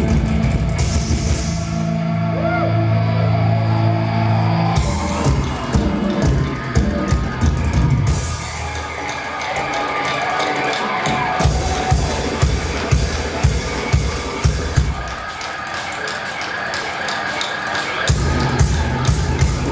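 Live rock band playing, heard from the audience: held, distorted guitar and bass chords ring for about five seconds, then give way to a drum-led percussion passage, with rapid, steady drum hits driving the second half.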